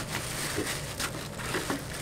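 Rustling and light crinkling of a drawstring bag as hands work it open around a helmet, with a few faint clicks.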